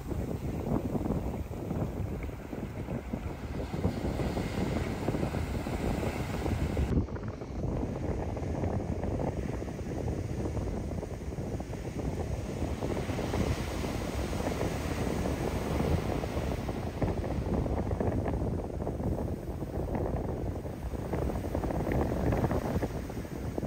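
Heavy shorebreak surf breaking and washing up the beach, with wind rumbling on a phone microphone.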